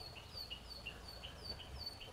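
A bird chirping faintly in a steady series of short, downward-sliding notes that alternate higher and lower, a few a second.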